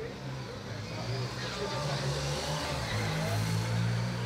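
A motor vehicle's engine running close by, growing louder from about a second in and loudest near the end, over faint voices.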